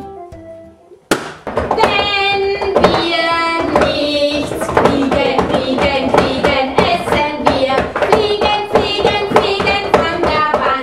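A group of young children and adult women singing a children's song together while clapping their hands in rhythm. It starts about a second in, after a brief bit of instrumental background music that cuts off.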